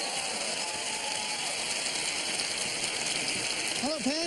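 Studio audience applauding, a steady wash of clapping.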